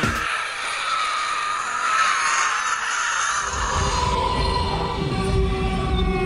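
Sustained, wavering sound-effect tones over a hiss as the intro music ends, joined by a low rumble about three and a half seconds in.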